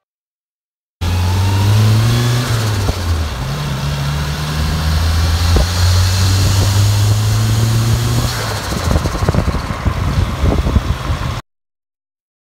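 Car engine running while the car is driven: the note climbs, drops at a gear change about two seconds in, then holds steady, with rougher road or wind noise joining in toward the end. The sound starts and stops abruptly.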